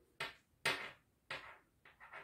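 Metal knitting needles and yarn being worked by hand: three short scrapes or rustles, each starting sharply and fading quickly.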